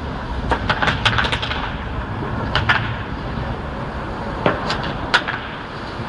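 New Year's Eve fireworks and firecrackers going off: a quick cluster of sharp bangs and cracks about half a second to a second and a half in, then scattered single bangs, over a steady low rumble of background noise.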